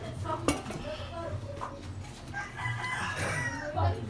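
A rooster crowing once, for about a second, starting about two and a half seconds in. A sharp click about half a second in comes from the tyre and inner-tube handling.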